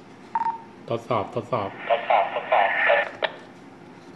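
A single short beep as the push-to-talk button in the Zello app is pressed, followed by a man's voice saying 'test, test' in Thai.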